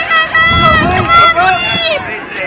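Loud, high-pitched raised voice talking.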